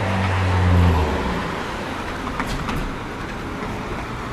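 A motor vehicle's engine passing close by on the street, its low hum loudest about a second in and then fading into steady traffic noise.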